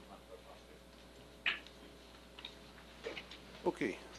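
Quiet lecture-hall room tone with a few faint clicks and small handling knocks, the sharpest about one and a half seconds in and a short cluster near the end.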